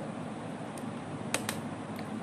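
Steady low room noise with a faint fan-like hum, and a quick double click a little past halfway: a computer keyboard key pressed and released, entering a terminal command.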